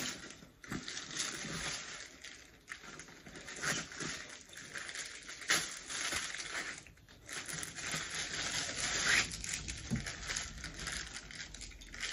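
Plastic wrapping crinkling and tearing as it is pulled off diaper-bag backpack straps, with scattered small clicks and rustles of handling throughout.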